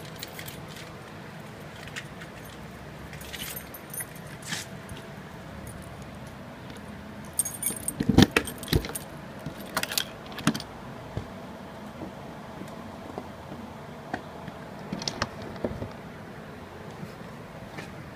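Handling noise from someone moving about with a handheld camera: scattered clicks and knocks over a steady faint background, with a louder burst of knocks and rattling clatter about eight to ten seconds in and a smaller one near fifteen seconds.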